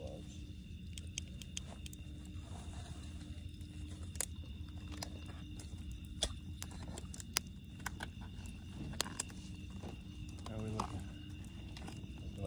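Wood campfire burning in a stone fire ring, crackling with scattered sharp pops over a low steady noise.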